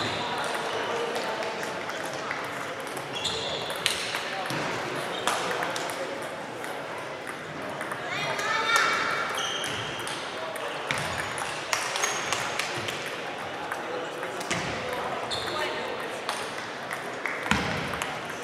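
Table tennis balls clicking irregularly off bats and tables from several matches played at once, over background chatter.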